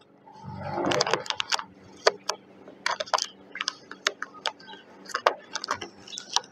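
Clear transfer tape being peeled by hand off a vinyl decal on a car's rear window glass, crinkling and crackling in a run of sharp little clicks, with a louder rustling swell about a second in.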